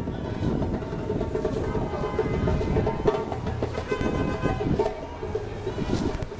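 Busy city intersection: continuous traffic rumble with music playing in the mix.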